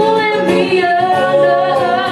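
A woman singing live into a microphone with acoustic guitar accompaniment, her voice gliding between notes and holding a long note in the second half.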